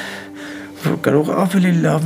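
Soft background music with long held notes, then about a second in a man speaks in a strained, tearful voice whose pitch wavers.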